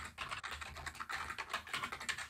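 Typing on a computer keyboard: a quick, uneven run of keystrokes as a terminal command is entered.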